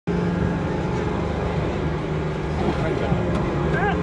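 Steady low mechanical hum of a swinging pirate-ship ride as it starts to swing. A child's high voice calls out near the end.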